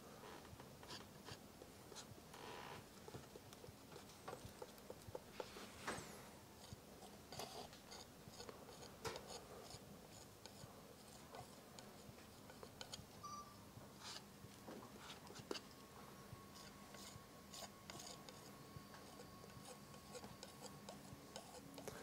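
Faint, scattered scrapes and light taps of a steel palette knife working oil paint, first mixing on the palette, then dragged lightly across a canvas panel, over near-silent room tone.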